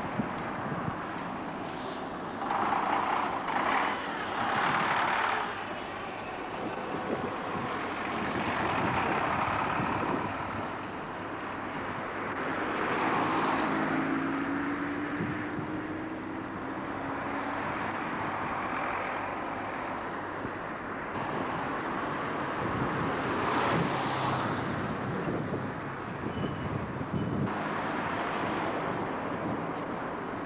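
Diesel buses running in town traffic, with loud bursts of hiss several times and an engine note that rises slightly about halfway through.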